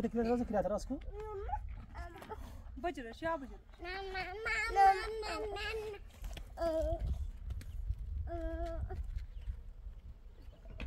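Voices of adults and small children talking and calling out in several separate bursts, the longest a wavering call in the middle, over a steady low rumble.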